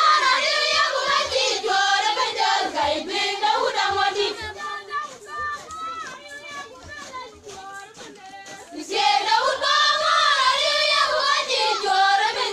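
A group of voices singing together in a song. It is loud at first, drops to a softer stretch in the middle, and swells again from about nine seconds in.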